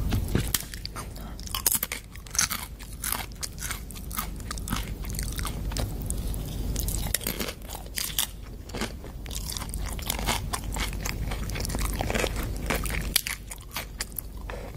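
Close-miked chewing and biting of crunchy food: a dense run of irregular crunches and crackles.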